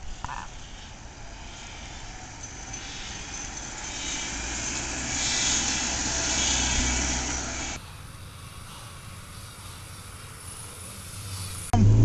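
Steady rumble and hiss of a car on the move, swelling for a few seconds in the middle, then cutting abruptly to a quieter, steadier hiss about two-thirds of the way through.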